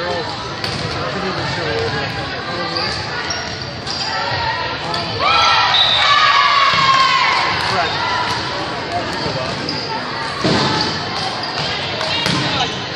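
Indoor volleyball play in a gym: sharp hits of the ball, sneakers squeaking on the hardwood court, and players' and spectators' voices calling out in the echoing hall. It is loudest for a few seconds about midway.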